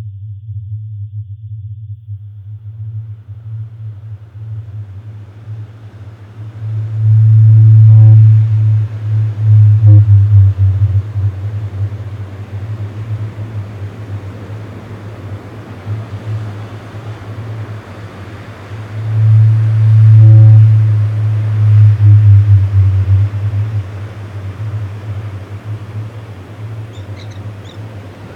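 Ocean ambience: a deep, steady rumble under a soft hiss like distant surf. The rumble swells loudest twice, about seven and nineteen seconds in.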